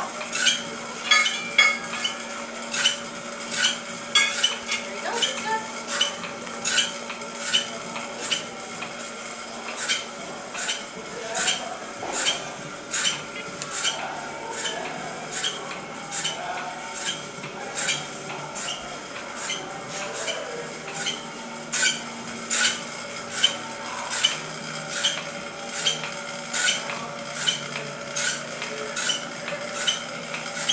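Rhythmic clicking, about two sharp clicks a second, from the VO2 max test rig as the cycle ergometer is pedalled hard and the rider breathes through the mouthpiece valve. A steady machine hum runs underneath.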